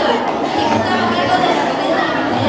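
Several children's voices speaking at once: a steady chatter of overlapping young voices.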